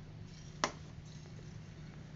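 A single sharp click a little over half a second in, over a low steady hum.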